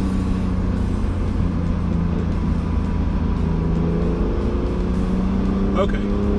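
2017 Acura NSX's twin-turbo 3.5-litre V6 running at a steady engine speed: an even, low drone whose pitch stays nearly constant.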